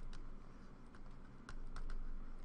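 Light clicks and taps of a stylus on a tablet screen as a word is handwritten, with a few sharp ticks bunched near the end.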